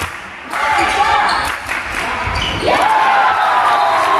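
Handball game in a sports hall: the ball bouncing on the hall floor amid shouting voices of players and spectators, with one rising shout a little past the middle.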